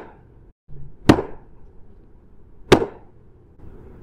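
Two sharp impacts about a second and a half apart, each with a short ringing tail, over a faint low background.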